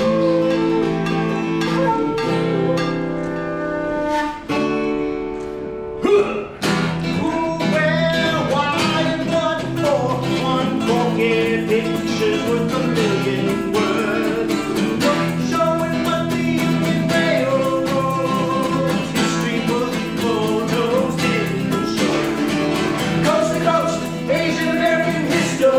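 Live acoustic music: an end-blown wooden flute plays a held, wavering melody over acoustic guitar chords, and about six seconds in the guitars strike a loud chord and strum on in a fuller passage.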